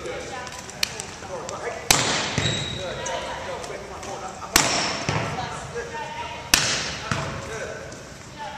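A volleyball struck hard three times, about two seconds apart, each sharp slap echoing through a large gym, with fainter ball contacts between.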